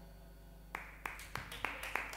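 The band's final notes die away, then sparse, uneven hand claps from a few people begin a little under a second in.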